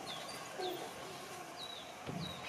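A small bird chirping repeatedly in short, high, falling notes, about one every half second, faint over the room's background.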